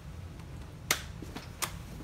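Two sharp clicks about three quarters of a second apart, the first louder, from the seat recline mechanism of an UPPAbaby Vista stroller as the seat is lowered into a recline.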